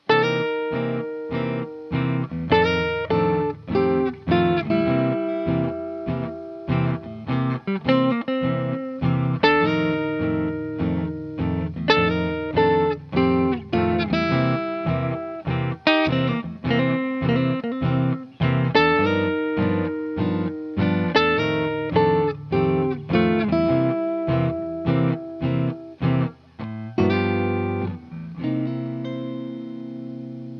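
Semi-hollow electric guitar playing a swinging 12-bar blues riff in C, two-note figures slid into from a fret below. It ends on a chord that rings out and fades near the end.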